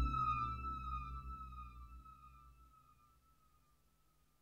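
Korg Prologue 16 analog synthesizer preset fading out: a high tone sliding slowly downward, repeating in overlapping echoes over a low drone, dying away to silence about three seconds in.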